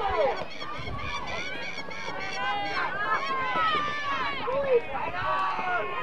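Several people shouting and calling out at once on a rugby league field, mostly high, raised voices overlapping, with one louder call just before the end.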